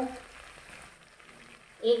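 Faint, steady sizzle of chicken feet frying in oil and spice masala in a steel kadai, in a pause between a woman's spoken words at the start and near the end.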